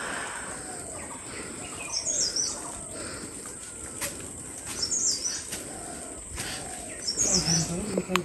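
A bird calling a short, high phrase three times, about every two and a half seconds, over a steady high-pitched insect drone.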